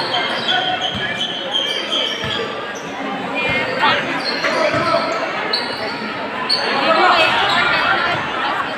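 A basketball bouncing on a court during live play, a series of separate dribbles, over the chatter and shouts of a crowd in a large covered hall.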